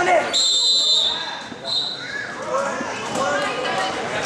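A referee's whistle blows: one long blast starting about a third of a second in, then a shorter one near the two-second mark, over shouting crowd voices.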